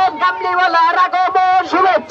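A man's voice, amplified through a horn loudspeaker, chanting with long held notes.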